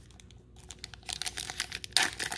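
Foil trading-card booster pack crackling and crinkling in the fingers as its top edge is pinched and torn open: scattered small clicks at first, then a busy run of crackles in the second half, loudest near the end.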